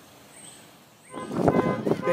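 Faint outdoor background noise, broken off about a second in by a loud sound: voices mixed with a steady stacked tone.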